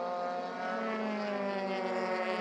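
Single-seater race car engine running at high revs, one steady note whose pitch drifts slowly lower.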